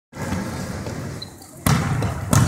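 A basketball bouncing on a hardwood gym floor, with one sharp, loud bounce near the end, over the general hubbub of a practice.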